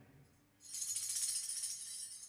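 Handheld tambourine shaken in a steady jingling roll, starting about half a second in.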